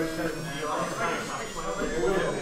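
Indistinct talking voices, no words picked out, with a faint buzz beneath.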